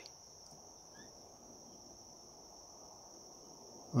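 Faint, steady high-pitched chorus of insects, most likely crickets, trilling without a break.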